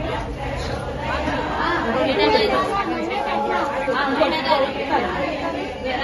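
Overlapping chatter of several women talking at once.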